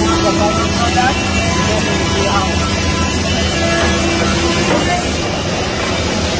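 Steady low hum and noise of woodworking machinery running on a timber factory floor, with people talking in the background.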